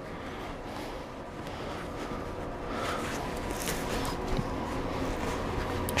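Low steady room noise with faint rustling of an elastic emergency trauma dressing being wrapped around a forearm.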